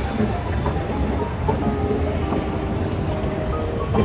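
Escalator running with a steady low rumble, with music playing over it.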